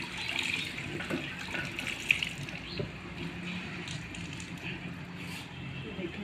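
Water running from a washbasin tap in a steady stream, with small splashes as an item is rubbed and rinsed by hand under it.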